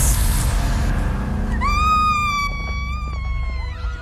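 Horror-film score with a sudden loud noisy hit, then a woman's high scream held for about two seconds.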